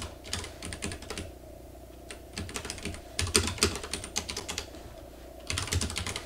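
Typing on a Vortex Race 3 mechanical keyboard: quick runs of key clicks in several short bursts, with brief pauses between them, the longest about a second in.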